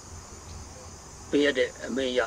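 A pause in a man's speech filled by a faint steady hum and hiss, then the man starts speaking again about a second and a half in.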